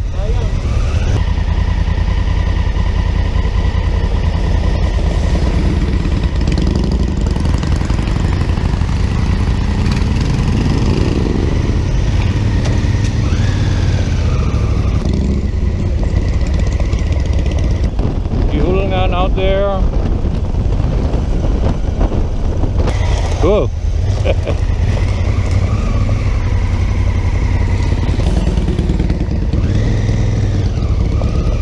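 Honda CRF1000L Africa Twin's parallel-twin engine running steadily under way, with a continuous low rumble of wind on the bike-mounted camera's microphone.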